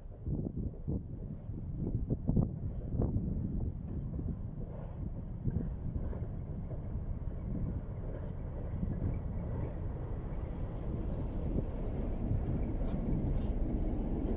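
SM31 diesel locomotive approaching and passing at low speed, its engine rumble building, followed by a long train of empty tank wagons rolling by. Wind gusts buffet the microphone in the first few seconds.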